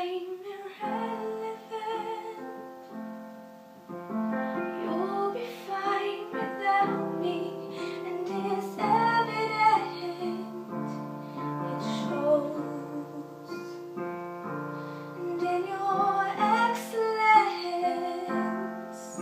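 A woman singing a pop song while accompanying herself on a digital piano, with held chords under the vocal line.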